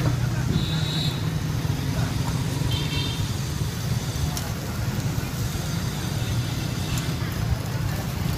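Steady low rumble of road traffic with faint background voices, two brief high chirps in the first few seconds and a light click a little after four seconds in.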